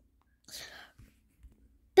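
A short, faint whisper: a breathy, unvoiced murmur lasting under half a second about half a second in, followed by a couple of soft clicks.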